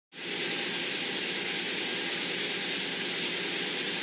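Steady, even rushing noise that starts abruptly just after the beginning and holds at one level.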